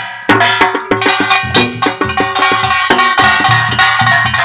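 Korean pungmul percussion: a kkwaenggwari, a small brass gong, struck in a fast, ringing rhythm over janggu hourglass drums.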